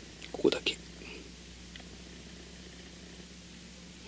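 A short, soft voice sound, like a breath or a quiet murmur, about half a second in, over a faint steady low hum.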